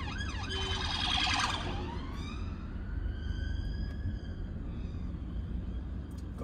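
Emergency vehicle siren heard from inside a moving car: a fast warbling yelp about a second in, then slow rising and falling wails, over the low rumble of the car's engine and road noise.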